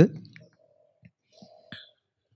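The end of a man's spoken phrase, then a quiet pause with a few faint mouth clicks close to the microphone.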